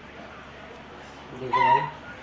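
A short, high, wavering cry about a second and a half in, lasting about half a second, over low background hiss.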